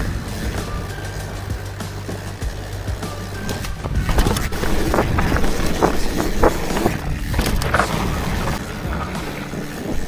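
Background music for the first few seconds. From about four seconds in it gives way to a louder rush of wind and the clatter of a mountain bike rolling fast over a bumpy dirt trail, with frequent short knocks and rattles.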